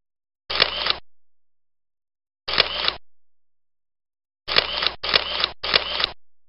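Camera shutter sound effect: two shutter clicks about two seconds apart, then three in quick succession near the end, each a short burst lasting about half a second.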